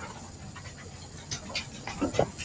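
Quiet room tone of a meeting room heard through a phone microphone: a steady low hum with a few faint short sounds about a second and a half in.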